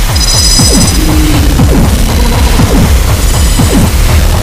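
Harsh industrial noise music: a loud, dense wall of noise over a pulsing low rhythm, cut through by many short sliding tones. A high, buzzing tone comes in at the start, stops about a second in, and returns near the end.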